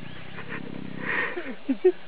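Lions growling during a mating attempt: a low rumbling growl, a short harsh snarl a little after a second in, then two short loud calls near the end.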